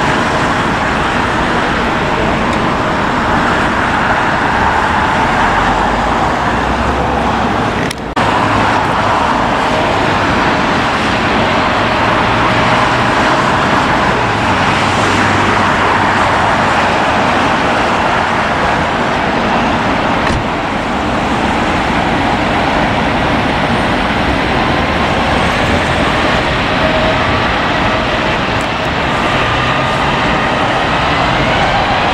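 Steady, loud outdoor noise of airliner jet engines mixed with road traffic, with a brief dropout about eight seconds in and a faint rising whine near the end.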